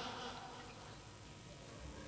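A pause in a man's sermon through a microphone and loudspeakers: his last words fade out in the first half second, leaving only a faint steady background hiss.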